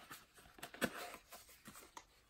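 Light handling noises from a subscription box being unpacked: a few short taps and clicks with faint rustling, the loudest click just under a second in.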